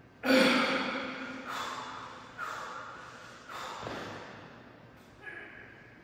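Five sharp sounds, one with each rep of a loaded barbell incline bench press, each fading over about a second; the first is the loudest.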